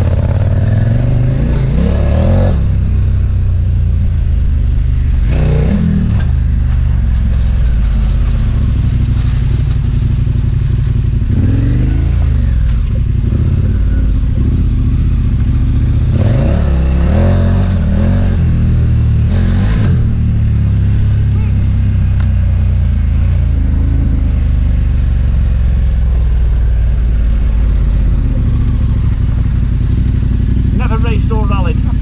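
Adventure motorcycle engine ridden off-road on a loose gravel track, heard from the rider's position, revving up and easing off again and again as it accelerates and slows.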